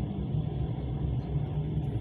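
Steady low rumble of a moving train heard from inside the carriage.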